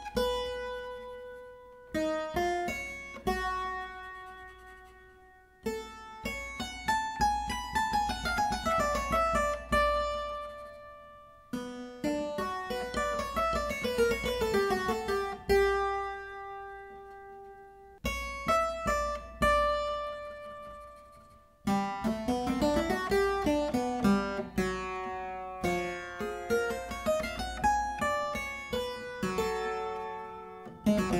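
Solo clavichord playing quick running scale figures up and down between held notes, in several phrases with short breaks between them. The long notes are given Bebung, the clavichord's vibrato made by varying finger pressure on the key.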